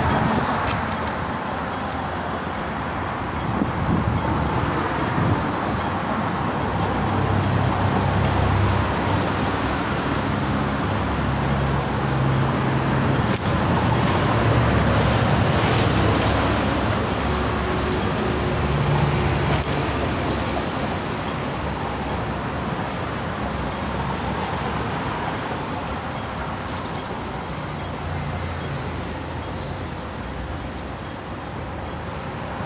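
Steady road traffic noise, with the low hum of vehicle engines swelling and fading as they pass.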